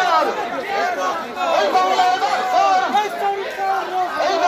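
Crowd of protest marchers shouting and chanting slogans, many voices overlapping.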